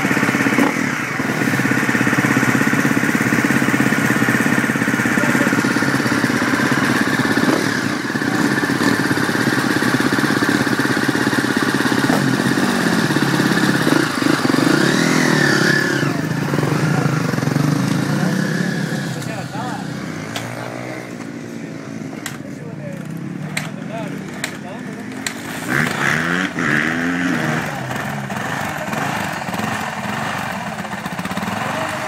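Several motocross bike engines running together, idling with the revs rising and falling as riders pull away. After about twenty seconds the sound drops and fewer engines are heard, with short blips of throttle.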